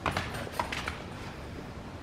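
A few light taps in the first second, from a small dog's paws as it moves about its playpen.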